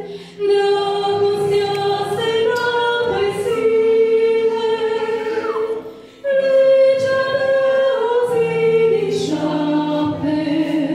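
Two women singing a Romanian hymn in duet into microphones, with electronic keyboard accompaniment; long held notes, with short pauses between phrases just after the start and about six seconds in.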